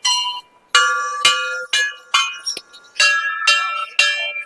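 Hanging brass temple bells struck by hand in quick succession, about two strikes a second, each strike ringing on with clear metallic tones. Several bells of different pitch sound over one another.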